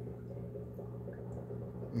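A steady low hum with faint background noise.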